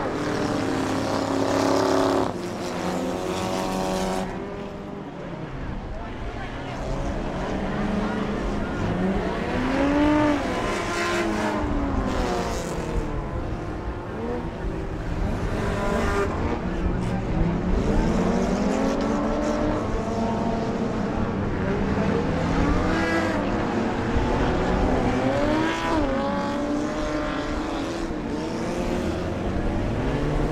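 Engines of a field of enduro stock cars racing around a short oval track, over a steady drone. Their pitch repeatedly rises and falls as cars accelerate and pass.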